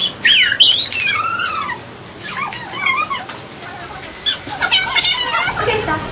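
Girls squealing and laughing in high-pitched voices, in three bouts.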